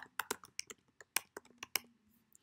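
Typing on a computer keyboard: about a dozen light, quick keystrokes clicking at an uneven pace.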